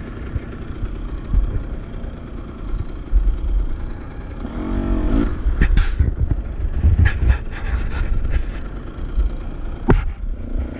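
Dirt bike engine idling on a stopped bike, with a short blip of revs about five seconds in. Several sharp knocks and clatters come through as the bike is handled, the last near the end.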